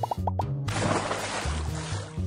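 Background music under animation sound effects: a few quick plops, then a fizzing rush of noise, like bubbling water, that starts just under a second in and lasts a little over a second.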